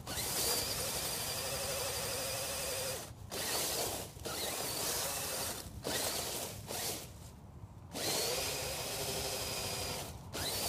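Electric motor and gearbox of a radio-controlled truck whining as it drives through dry leaves, the pitch wavering with the throttle. It cuts out briefly a few times, eases off for about a second near seven seconds in, then picks up again.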